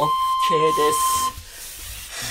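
Interval-timer beep: one long, steady electronic tone that starts as the countdown hits zero and cuts off suddenly after about a second and a quarter, signalling the end of the stretch set.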